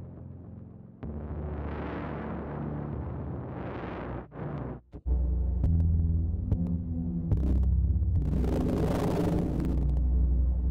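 Sustained synthesizer saw-wave tone run through iZotope Trash 2 distortion presets: a low, heavily distorted drone that changes character as the preset changes. It switches about a second in, and again after two brief dropouts around four to five seconds, then goes on louder and deeper, with a swell of hiss near the end.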